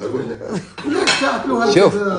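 A plate clinking against the tabletop and other dishes as it is picked up, a few sharp clinks about half a second to a second in, over men's voices.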